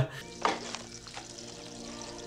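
Food sizzling in frying pans on a stove: a steady hiss, with a small knock about half a second in.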